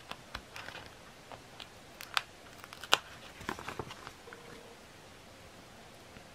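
A sticker being peeled off its backing sheet and the sheet handled: a scatter of small paper crackles and ticks, the sharpest about two and three seconds in.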